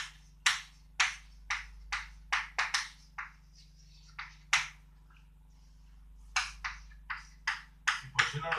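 Chalk writing on a chalkboard: a run of short, sharp taps and scratches, several a second, as each stroke strikes the board, with a pause of about a second and a half midway.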